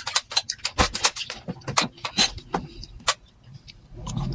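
Close wet chewing and lip-smacking of a person eating ripe mango, a rapid run of sharp mouth clicks that thins out near the end.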